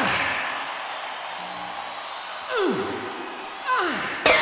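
Stadium crowd noise from a large concert audience, with three swooping tones that fall steeply in pitch, about a second or more apart, just before the song's music starts.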